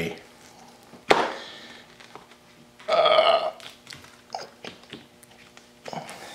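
A silicone pizza pan being pried and flexed off epoxy resin that has stuck to it: a sharp pop about a second in, a short pitched sound about three seconds in, and a few light ticks after that.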